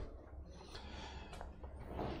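Quiet room tone: a low steady hum with a faint click about one and a half seconds in.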